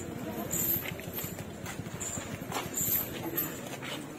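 A temple elephant walking along a paved lane among people on foot: a steady run of footsteps with short metallic clinks about once a second.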